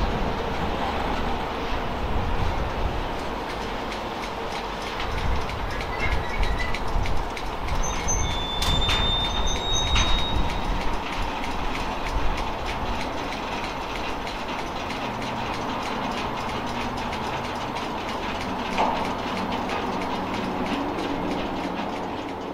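Freight cars rolling on the rails: wheels rumbling and clacking, with brief high-pitched wheel squeals about six seconds in and again for a couple of seconds around eight to ten seconds in.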